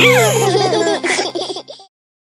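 Cartoon children's voices laughing and giggling over a held low note; everything cuts off abruptly to silence near the end.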